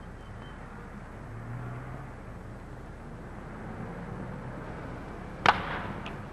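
A single sharp crack of a wooden bat meeting a pitched baseball near the end, solid contact that sends a line drive foul down the left-field line. Before it there is only the steady hiss and low hum of an old film soundtrack.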